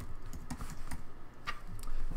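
Typing on a computer keyboard: an uneven run of quick keystroke clicks.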